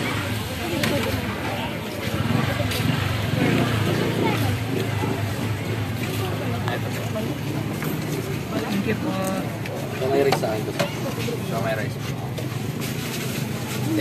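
Indistinct talk at a street food cart over a steady low hum of street noise, with a few light clicks and knocks of utensils and containers.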